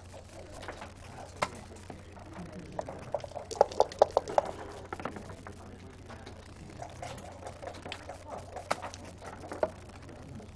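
Backgammon play: a quick run of sharp clacks from dice shaken in a cup and thrown onto the board, among scattered clicks of checkers being moved and set down.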